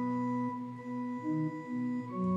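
Pipe or electronic church organ playing a slow passage: one note is held throughout while lower notes move beneath it.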